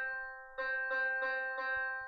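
Electronic piano notes from a laptop's Makey Makey piano program, set off by touching the glass of water wired to the board. One note is already sounding at the start, the same note sounds again about half a second in, and it rings on, slowly fading.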